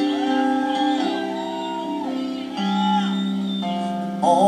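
Live rock band playing an instrumental passage: electric guitars and keyboards hold sustained chords while lead notes bend up, hold and slide back down.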